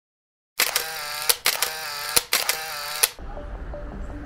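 Electronic intro sound effect for an animated logo: silence, then about half a second in a loud wavering synthetic tone broken into four short pieces by sharp clicks, cutting off suddenly about three seconds in. A softer music bed with a low hum and small repeating pips begins at that point.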